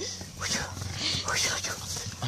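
A medium-sized dog breathing hard and snuffling as it noses and mouths a soft, partly deflated ball, with a few short rising breathy sounds.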